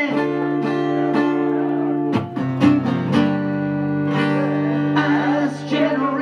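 Acoustic guitar strummed live, the chords struck in a loose rhythm and left ringing, changing chord about two seconds in.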